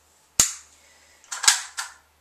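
Sharp clicks from a compact M4-style airsoft rifle's metal fittings being worked by hand: one click about half a second in, then a quick run of three near the end, the middle one loudest.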